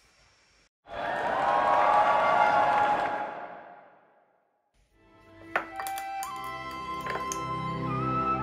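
A swelling sound, rising to a peak and fading out over about three seconds. After a short gap, soft background music with sustained tones and a low bass begins.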